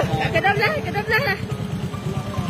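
A loud, pulsing low rumble of vehicle engines on a highway at night, with people talking over it.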